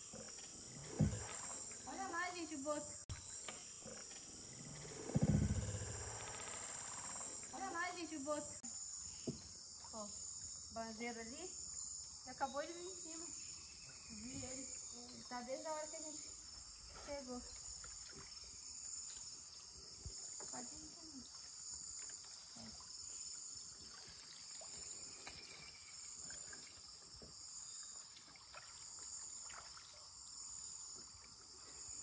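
Steady high-pitched insect chorus of the flooded forest, pulsing slowly, with a low splash or rush of water about five seconds in.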